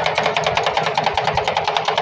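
Two steel spatulas rapidly chopping and scraping ice cream on a stainless-steel cold plate: an even, fast metallic clatter of about a dozen strikes a second.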